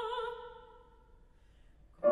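A female operatic voice holds the end of a sung note with wide vibrato, fading away during the first second. Then comes a pause of near silence.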